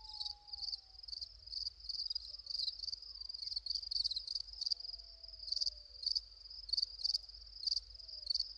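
Crickets chirping as night ambience: a continuous high trill that swells in regular pulses about twice a second, with faint, slowly falling tones underneath.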